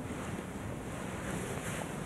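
Steady background hiss of a quiet church room tone, with a few faint small clicks.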